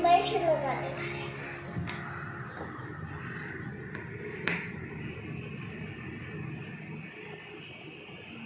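A young girl says a few words, then quiet room noise with faint background music underneath and two light clicks, one about two seconds in and a sharper one about four and a half seconds in.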